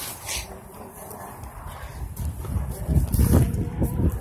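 Irregular low rumbling and knocking from a handheld phone's microphone being jostled and swung about while the holder walks, loudest near the end.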